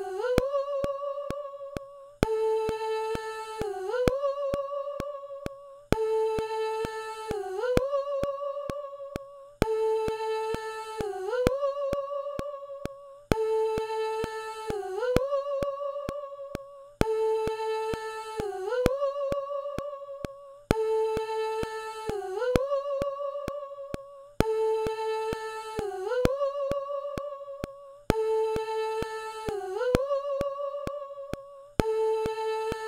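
A short snippet of an isolated sung vocal plays back in a loop, about eight times, once every three to four seconds. Each pass is a held hum-like note that dips, then slides up a few semitones to a higher held note and fades before the loop restarts. Thin ticks sound through each pass.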